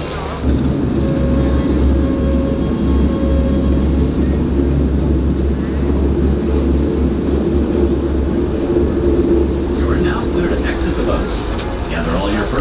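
Passenger motor launch under way, heard from on board: its engine runs with a steady low drone, under a rushing noise of water and wind. Voices come in near the end.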